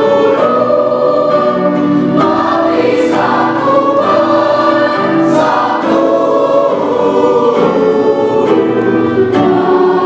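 Mixed choir of teenage voices singing an Indonesian song in parts, holding sustained chords that move from note to note, with a couple of brief sung 's' consonants.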